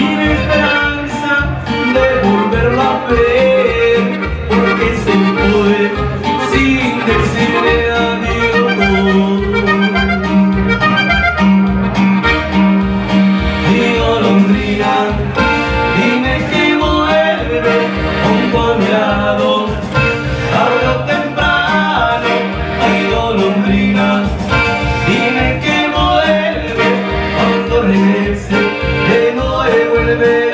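Diatonic button accordion playing the melody, with electronic keyboard accompaniment over a steady beat, in an instrumental passage of a live Spanish-language song.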